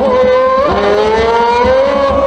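A single voice holding one long sung note of a danjiri pulling song (hikiuta), rising slowly in pitch.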